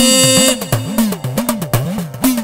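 Male voice holding the last sung note of a line, which ends about half a second in. The backing music then carries on alone with a quick, steady beat.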